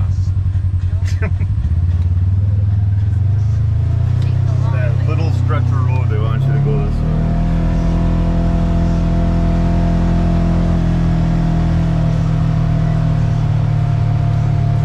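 Polaris General XP 1000's 999 cc twin-cylinder engine heard from inside the cab, running low as the side-by-side sits at a stop, then climbing as it pulls away. From about halfway in it holds a steady cruising note.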